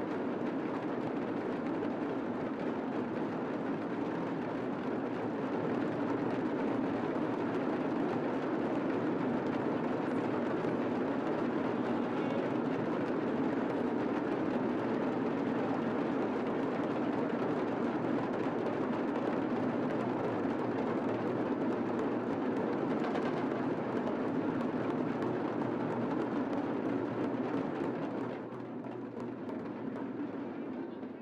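Many drums played together in a dense, continuous roll, steady throughout and dropping in level near the end.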